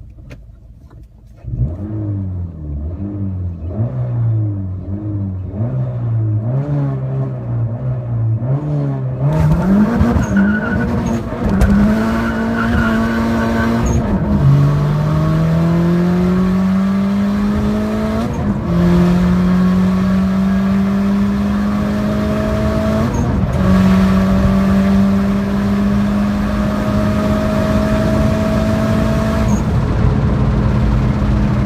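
Turbocharged Honda Jazz (GK) four-cylinder engine with a manual gearbox, heard from inside the cabin under hard acceleration. At first the engine note wavers up and down. Then it climbs steadily, with three upshifts that each bring a sudden drop in pitch, ending in a long, slow rise in a high gear.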